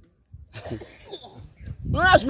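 A pause in a man's loud preaching, with faint background voices, then his voice starts again near the end.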